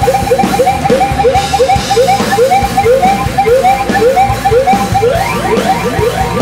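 Hardcore punk band playing live and loud: a short rising-and-falling pitched figure repeats about three times a second over pounding drums and distorted noise.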